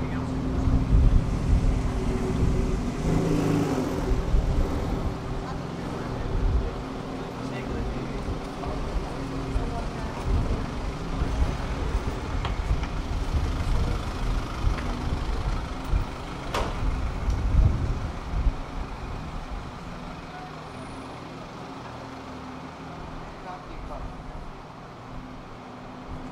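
City street sound: a motor vehicle's engine running close by with a steady low rumble, amid traffic and passers-by's voices. There is one sharp knock about sixteen seconds in, and the engine noise fades after about eighteen seconds, leaving quieter street background.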